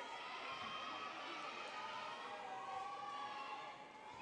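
Crowd in a large hall cheering with long, high-pitched shrieks and whoops, easing off a little near the end.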